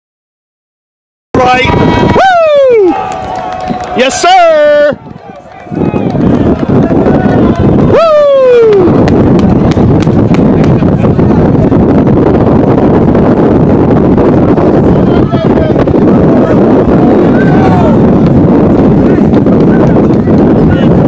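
After about a second of silence, three loud shouts, each falling in pitch, spread over the first nine seconds. From about six seconds in, a steady rush of wind buffets the microphone.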